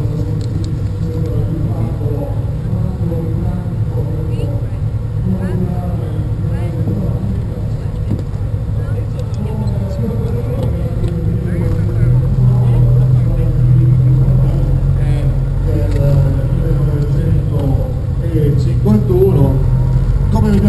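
Citroën Traction 15 Six's straight-six engine running at low revs with a steady low hum, growing louder about twelve seconds in as the car pulls away slowly. Voices of a crowd mix in.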